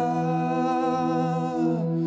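Live worship music: a singer holds one long note over a steady sustained accompaniment, the note dropping away just before the end.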